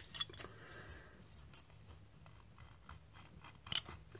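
Faint handling noise of a painted metal chainsaw crankcase half being turned over in the hands: light scraping and rubbing, with a sharper tick just before the end.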